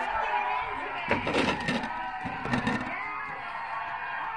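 Television sound from a studio talk show: voices with music underneath, and a few short sharp sounds about a second in and again past halfway.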